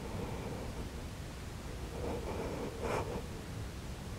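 Quiet steady room noise with a faint hum, and one soft breath that swells and ends about three seconds in.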